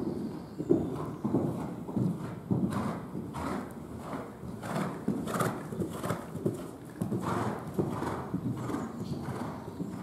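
Horse cantering on sand footing in an indoor arena: a steady rhythm of muffled hoofbeats, a stride roughly every half second.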